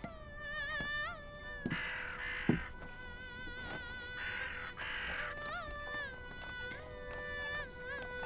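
Chinese opera heard from a distance: a high singing voice holding long, wavering notes over the accompaniment, with two sharp percussion clacks about two seconds in.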